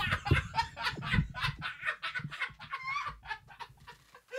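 A man and a woman screaming and yelping in fright in short, rapid, wavering cries, with heavy low thumps in the first second or so.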